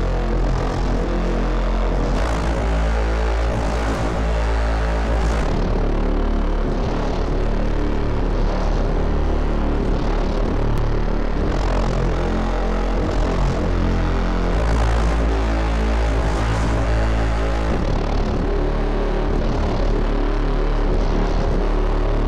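UVI Falcon synthesizer patch playing: a sustained wavetable oscillator tone layered with a deep sine-wave bass from an added analog oscillator, all through delay, analog crunch and analog filter effects. The low note shifts several times.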